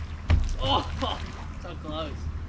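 A bass swung up out of the water lands with one loud thump against the boat about a third of a second in. Two short bursts of voice follow.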